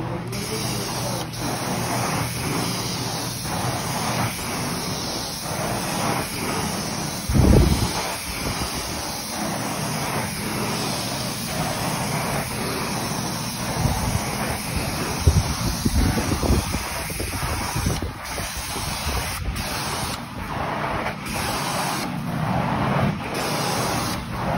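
Carpet-cleaning machine running: a steady rushing hiss of spray and suction with a low machine hum beneath, and light regular strokes. Louder low thumps come about seven seconds in and again around fifteen seconds.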